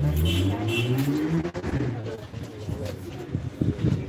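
A low, drawn-out human voice, rising slowly in pitch for about a second and a half, followed by scattered knocks and handling noise.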